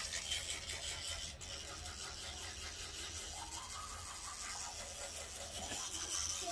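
Teeth being brushed with a toothbrush: a steady, scratchy scrubbing of bristles against teeth.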